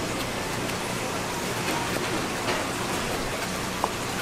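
Steady hiss of water, like rain falling, with a few faint light taps of a knife on a plastic cutting board as raw fish is sliced.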